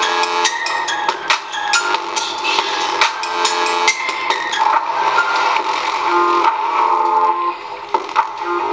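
Instrumental beat music playing, with crisp percussive hits over a repeating melodic line. It is heard at full range with its high end intact, unmuffled: no low-pass filter is on it.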